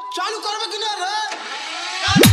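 Breakdown in an electronic dance remix: the kick drum and bass drop out, leaving a processed voice sample with wavering synth tones. The beat comes back at the end.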